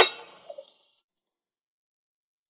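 A single sharp metallic clang with a short ring, followed about half a second later by a faint small knock.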